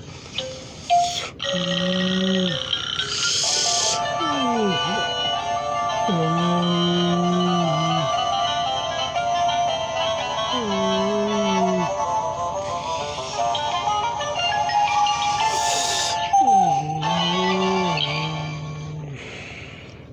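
Battery-operated Gemmy animated plush Frankenstein toy playing its electronic tune while it moves, a layered melody with low sliding notes that come back every few seconds.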